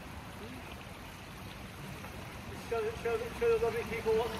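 Indoor swimming pool ambience: a steady wash of water noise across the pool hall. From a little under three seconds in, a voice starts speaking.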